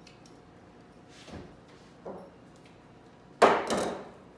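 Willow rods knocking and rustling together as they are handled and gathered at the top of a woven willow tower, with a few light clicks and a louder rustle about three and a half seconds in.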